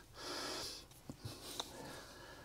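A man's breath drawn in through the nose, close to a clip-on microphone, about half a second long, followed by a few faint ticks.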